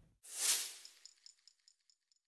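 A short whoosh followed by a trail of faint, high, echoing ticks that fade away: an edited transition sound effect laid over a fade to a title card.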